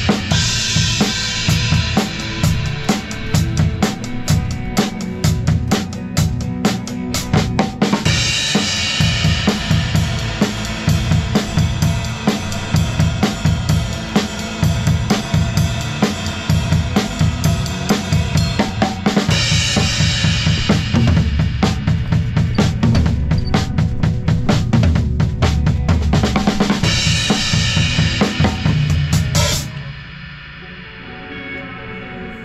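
Drum kit played through a full-band song: a steady bass drum and snare beat, with brighter, louder crash-cymbal passages every several seconds. The playing stops abruptly just before the end.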